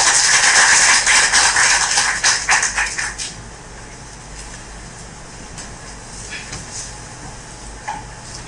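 Audience applauding, a dense patter of many hands clapping that stops about three seconds in, leaving quiet room tone.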